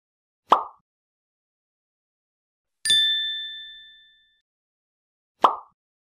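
Logo-intro sound effects: a short pop about half a second in, a bright ding near the middle that rings out for about a second, and a second matching pop near the end.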